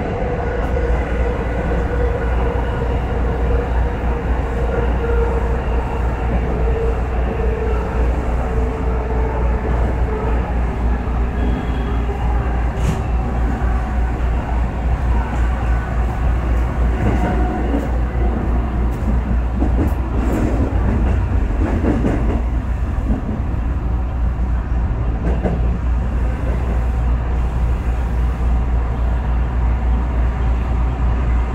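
JR West 221 series electric train running, heard from on board: a steady low rumble of wheels on rail, with a whine that falls slowly in pitch over the first ten seconds as the train slows. A few clicks and knocks come from the wheels crossing points in the second half as it nears the station.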